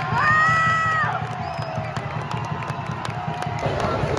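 A crowd cheering and shouting, mixed with background pop music; a long held note in the music sounds for most of the first second.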